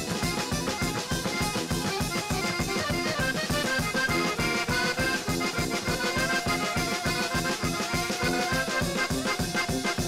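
Klezmer band playing an instrumental tune live, fiddle and other instruments carrying the melody over a fast, even beat.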